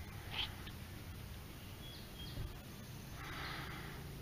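Faint bird calls over quiet outdoor ambience: a short call early on and a longer, harsher call near the end.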